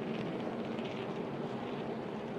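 NASCAR Cup stock car V8 engines running at speed on the track, a steady drone.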